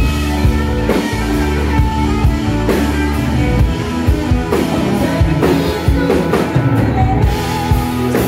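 A rock band playing live: a Stratocaster-style electric guitar plays sustained lead lines over a drum kit, with a steady beat.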